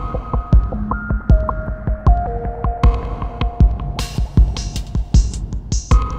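Downtempo electronic chill-out music: a deep kick drum pulses about every three-quarters of a second under held synth tones that step between pitches. Crisp high percussion comes in about four seconds in.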